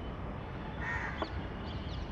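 A single short, harsh bird call, a caw, about a second in, over steady low background noise, followed by a sharp tap of chalk on the blackboard.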